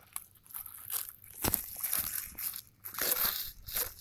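Disposable plastic glove crinkling and crackling as a gloved hand handles a small, wet fish organ, with a sharp click about a second and a half in.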